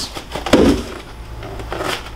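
Handling noise from a cardboard shoebox being moved and shifted in the hands, with one louder rub about half a second in.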